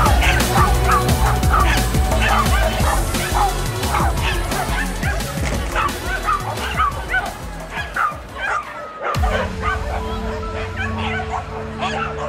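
A dog barking in a quick, excited string, two or three barks a second, over loud background music with a heavy beat; the music changes about nine seconds in.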